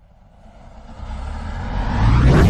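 A rising transition sound effect for an animated title: a low rumbling swell that grows steadily louder.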